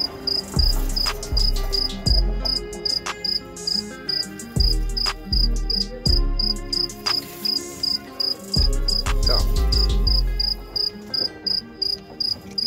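A cricket chirping steadily, about three short high chirps a second. Under it come repeated low thumps and a few sharp clicks, which are the loudest sounds.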